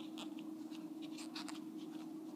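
Faint small clicks and scratches of fingers working a plastic C-clip onto rubber loom bands, over a steady low hum.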